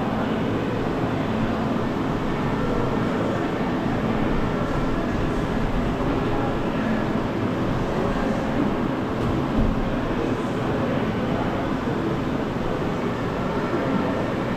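Steady room noise of a large, echoing jiu-jitsu training hall while pairs grapple on the mats, with muffled voices in it.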